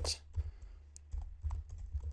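Typing on a computer keyboard: a handful of irregular, separate keystrokes.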